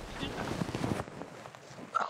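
Rustling of dry pine needles and forest litter as a person stirs and pushes himself up off the ground, with faint vocal sounds from him; a short, louder sound comes right at the end.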